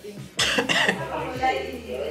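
A man coughs twice in quick succession about half a second in, then his voice follows.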